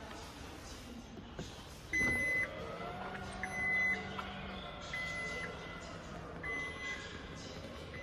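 Changan UNI-V's electric power tailgate closing: a high warning beep starts about two seconds in and repeats roughly every second and a half, about five times, with the tailgate's motors humming underneath.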